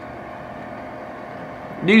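A steady machine hum carrying a few faint whining tones, with a man starting to speak right at the end.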